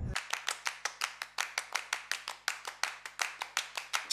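Dry percussion clicks in a fast, steady pulse, about seven or eight a second, with no bass or other instruments under them.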